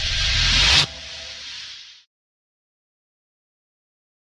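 Tail of an edited intro sound effect: a noisy whoosh swells up and cuts off abruptly a little under a second in, then a quieter hiss fades out by about two seconds, followed by silence.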